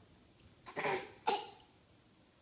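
A toddler's voice in two short, harsh bursts in quick succession about a second in.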